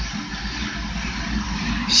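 Steady low hum and rumble of boiler-room machinery running.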